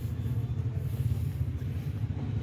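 A low, steady rumble of background noise, with no clear single source.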